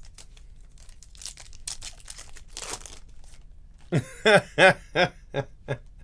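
Trading-card pack wrapper crinkling and tearing, with cards rustling in the hands. About four seconds in, a person laughs in five or six short bursts, the loudest sound here.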